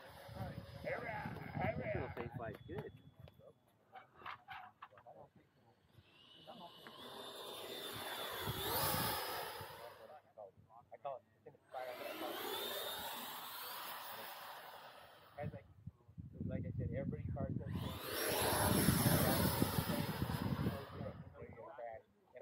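Electric ducted-fan RC jet, a Freewing Mirage 2000, making three low passes. Each time its high whine and rushing air swell up loud and fade away, and the last pass is the loudest.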